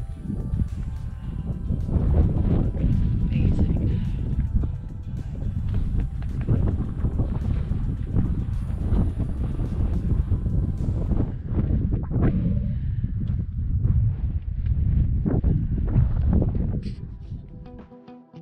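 Wind buffeting the camera microphone in gusts, a loud rough rumble that eases off near the end.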